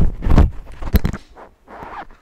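Handling noise from a person getting up from a workbench seat and moving about: low thumps at first, a sharp click about a second in, then a short scrape near the end.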